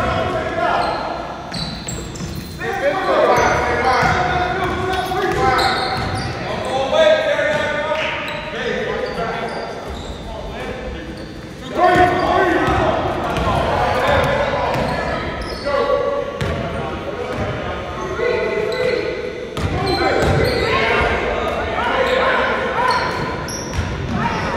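Indistinct voices of players and spectators echoing in a large gymnasium, with a basketball bouncing on the hardwood court as it is dribbled.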